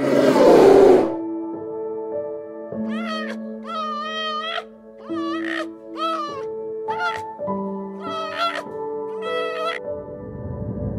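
A loud, rough growl that cuts off about a second in, then soft music of sustained notes. Over the music comes a series of six high, wavering, meow-like animal calls, the first the longest.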